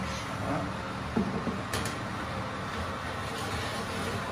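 A metal baking tray being slid onto an oven rack, with a click about a second in and a sharper clink a little later, over a steady low background rumble.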